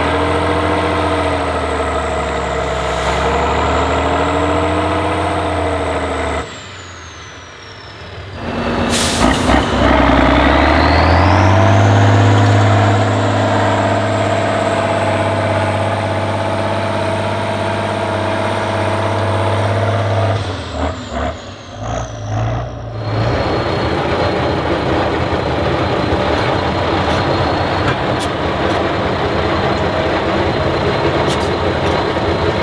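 Tatra 8x8 trial truck's diesel engine working hard up a steep dirt climb, its pitch wavering as the throttle is worked, with a high whistle above it. About six seconds in the engine drops away briefly, then after a sharp knock the whistle rises and the engine pulls at high revs for several seconds. It turns uneven, and in the last stretch a steadier truck engine sound takes over.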